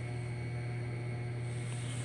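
A steady low hum with faint hiss in the background, with nothing else sounding.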